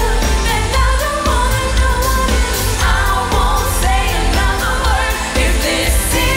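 Pop song sung by a female vocal group over a steady beat with heavy bass.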